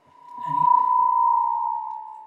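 Audio feedback whistle from a conference desk microphone: one steady high tone that swells within the first second and then fades away.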